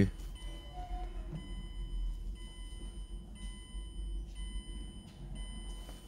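Car's electronic warning chime, a faint high-pitched tone repeating about once a second, sounding with the key in the ignition and the driver door open.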